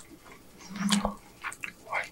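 Close-miked chewing of a mouthful of birria taco: wet mouth clicks and smacks. A short low hum comes about a second in, ending in a sharp click.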